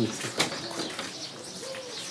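A dove cooing in low, soft calls about halfway through, over the murmur of a crowded waiting area. There is a single sharp click about half a second in.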